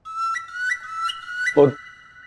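Background music: a high, pure-toned melody whose short phrase leaps upward in pitch four times, once every third of a second or so.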